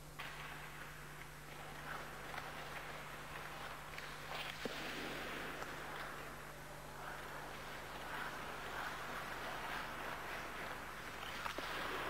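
Ice hockey skates scraping and gliding on rink ice, with a faint sharp knock about four and a half seconds in and another near the end, over a low steady hum.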